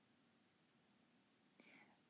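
Near silence: room tone, with a faint soft noise near the end.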